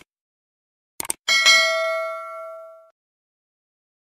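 Subscribe-button sound effect: two quick mouse clicks about a second in, then a notification bell ding that rings and fades away over about a second and a half.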